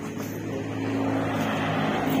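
A jeepney driving past on the highway, its engine hum and tyre noise growing louder as it nears.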